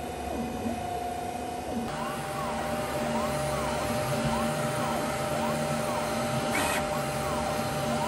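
QIDI Tech Q1 Pro 3D printer running a print: a steady fan whir with constant hums under it. From about two seconds in, the stepper motors whine in repeated rising-and-falling pitches, roughly one sweep a second, as the print head traces the round part.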